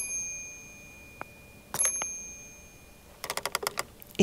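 Fisher-Price toy house doorbell: pressing the button strikes the small bell, which rings twice, about two seconds apart, each ring fading away. Near the end comes a quick run of light clicks.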